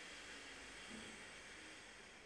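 Faint, steady hiss of a slow inhale through one nostril during alternate nostril breathing (nadi shodhana), fading a little after about a second, over quiet room hiss.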